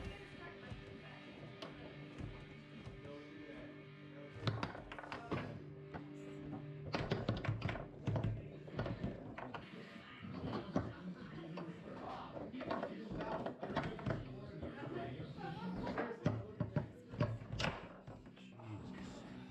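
Foosball being played: the ball and the plastic players on the rods strike with sharp knocks and clacks, coming thick and fast from about four seconds in, over background music and voices.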